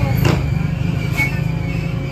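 Steady low mechanical rumble, like a motor or engine running, with a couple of faint brief clicks over it.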